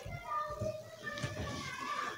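Children's voices in the background, talking and calling in short, wavering phrases.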